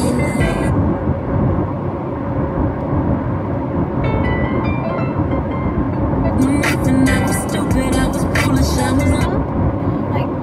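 Steady road and engine rumble inside a moving car, with snatches of music playing. The music stops within about half a second of the start, comes back faintly around four seconds in, plays louder for a few seconds, then cuts off about nine seconds in, as the iPhone skips from track to track.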